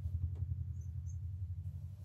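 A steady low hum, with two faint, brief high chirps about a second in.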